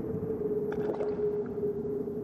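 Horror sound-effect soundscape: a steady, slightly sinking low drone over a churning, rumbling noise, with a few faint clicks a little under a second in.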